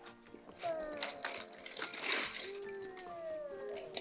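A pile of colored pencils poured out of a pouch, clattering onto the floor, loudest about halfway through.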